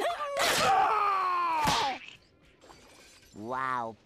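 Cartoon sound-effect audio: a hit, then a loud sound whose pitch slides downward for about two seconds, ending in a sharp crack. About three and a half seconds in comes a short cartoon character's voice.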